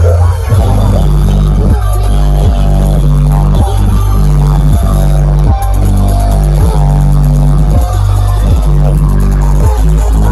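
Loud electronic dance music with a deep, heavy bass line, played through huge stacked outdoor sound systems in a sound-system battle.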